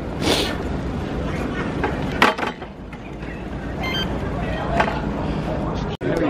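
Street noise with a steady low rumble, and one sharp metallic clunk about two seconds in from a hire bike being handled in its docking station.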